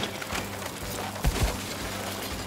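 Cartoon background music under a scraping sound effect as a limousine's side rubs along a tree branch, with a couple of low thuds a little over a second in.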